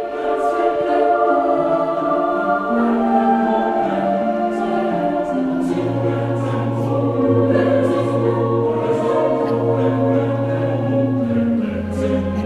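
Choir singing a slow hymn in a church, with long held notes that change in steps. A low sustained bass note enters a little before halfway and is held to near the end.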